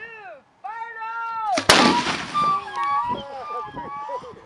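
A black powder mortar firing a bowling ball: one sharp, loud boom about a second and a half in, right after the last count of a countdown, with a long fading echo after it.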